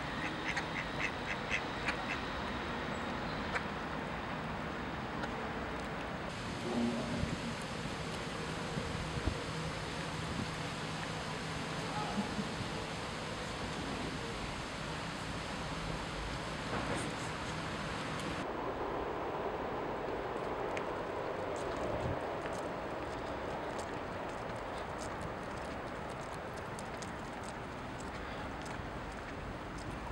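Mallard ducks quacking now and then over a steady outdoor background noise.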